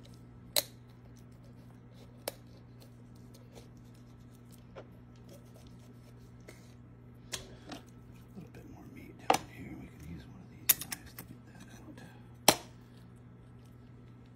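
Knife cutting rabbit meat from the bone on a plastic cutting board: scattered sharp clicks and taps as the blade and bones knock the board, bunched in the second half with the loudest near the end, over a steady low hum.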